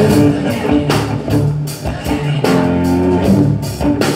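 Live band music played loud, electric guitar to the fore, in a pause between sung lines, heard from the audience in the room.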